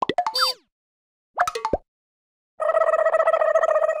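Cartoon-style comedy sound effects: a quick cluster of falling whistle-like glides at the start, a short springy blip about a second and a half in, then a steady buzzing tone for the last second and a half.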